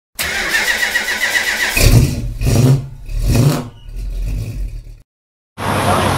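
A car engine cranked by its starter with a fast, even whirring, catching about two seconds in and revved twice before dying away. After a short silent gap, outdoor background noise begins near the end.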